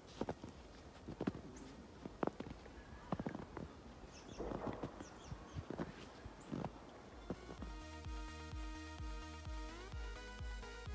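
Footsteps on a snow-covered path, roughly one a second, each a short crunch. About seven and a half seconds in, electronic music with a steady thumping beat comes in and carries on to the end.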